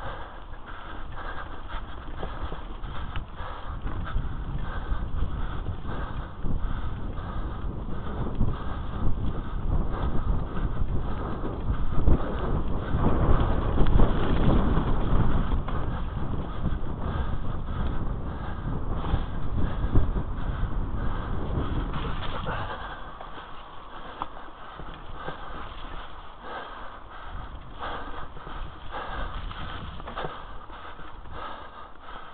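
Mountain bike riding fast down a dirt forest trail: the tyres rumble over the rough ground, with frequent rattles and knocks from the bike. The rumble grows louder through the middle and eases about three quarters of the way in.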